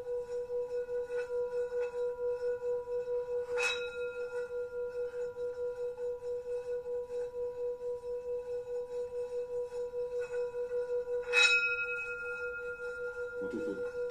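Metal singing bowls resting on a person's back, struck with a mallet. A steady ringing tone wavers about three times a second and is freshly struck twice: once about four seconds in, and more loudly just past eleven seconds.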